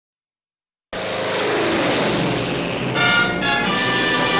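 A propeller fighter plane's piston engine running loud on its takeoff run. It starts suddenly about a second in and its pitch falls slightly. About three seconds in, orchestral brass music comes in over it.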